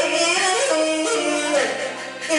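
A woman singing a Taiwanese opera (koa-a-hi) aria through a microphone and PA, her melodic line stepping and wavering in pitch and held on long notes, over steady low instrumental accompaniment.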